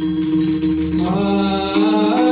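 Devotional kirtan music: a steady held drone note throughout, with a singer's chanted line beginning about a second in.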